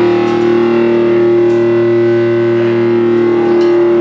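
Electric guitar holding one chord through its amplifier, ringing steadily at an even volume without fading.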